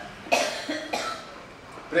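A person coughing twice: a sharp, loud cough about a third of a second in, then a weaker second cough about a second in.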